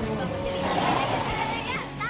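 A young woman shouting after a departing taxi for it to wait. A hiss of noise swells and fades about a second in.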